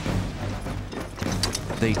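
Cartoon sound effect of lightning crackling and thunder rumbling over a low, steady music drone, the crackle thickening into rapid clicks in the second half. Narration starts at the very end.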